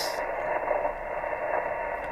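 Receiver audio from an ICOM IC-7100 transceiver in LSB on the 40-metre band: a steady, muffled hiss of band noise and static, its top end cut off by the SSB receive filter, while the dial is tuned back and forth.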